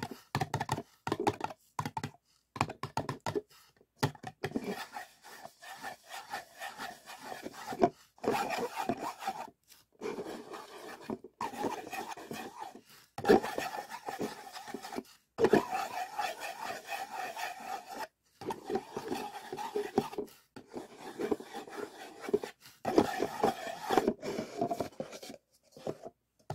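Fingertips rubbing and scratching inside paper cups, in stretches of one to three seconds with short silent breaks. A few quick separate scratches come first.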